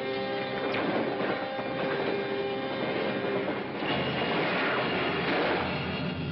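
Film soundtrack of a 1950s science-fiction space scene. Sustained eerie tones hold for the first few seconds, then about four seconds in a heavy rushing, rumbling sound effect for the spacecraft swells up and takes over.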